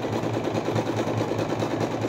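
Domestic electric sewing machine stitching a seam through fabric at a steady speed, its needle hammering in a fast, even rhythm.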